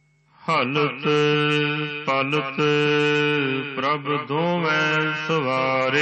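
Sikh gurbani kirtan: a voice singing a shabad in long, bending phrases over a steady harmonium drone. It begins about half a second in, after a moment of near silence.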